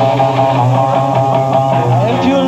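Live blues-rock trio playing an instrumental passage: electric guitar over bass guitar and drums, with a steady low bass note running underneath.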